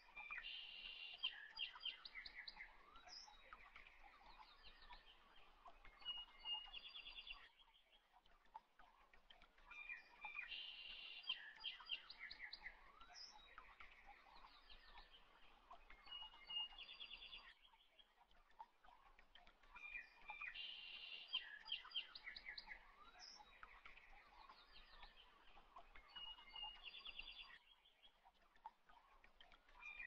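Faint birdsong, chirps and quick trills, in a short recorded loop that repeats the same phrase about every ten seconds with a brief pause between.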